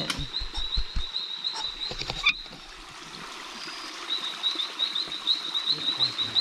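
A high-pitched chirping call repeated about four to five times a second from a small night animal. It breaks off a little over two seconds in and starts again about four seconds in. Close knocks and rustling come in the first second, and a sharp knock just over two seconds in.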